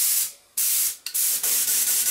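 Compressed air hissing out of a spray gun triggered in about four short blasts with brief gaps, while the air pressure is set on the small dial gauge at the gun's inlet.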